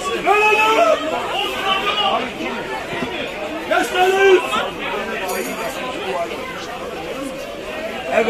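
Several people talking at close range, with overlapping chatter and no other sound standing out.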